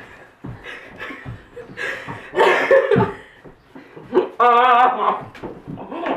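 Young people laughing and giggling in a small room, in irregular breathy bursts, with a drawn-out wavering laugh about four seconds in.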